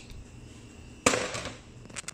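Food frying in a pan of butter, with a sudden loud crackling sizzle about a second in that fades over about half a second, as wet baby spinach hits the hot fat.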